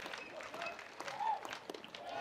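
Faint crowd noise in a ballpark, a low wash of voices and scattered clapping from the stands.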